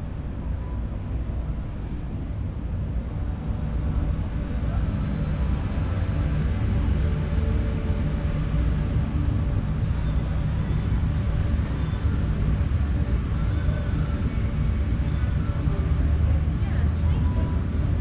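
Steady, loud low rumble of outdoor background noise at a waterfront, with faint distant voices.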